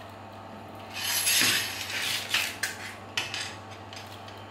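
A lamp stand's coiled power cord and plug being set down on a cardboard-covered board. It starts as a rustling scrape about a second in, then comes a few light clicks and clinks.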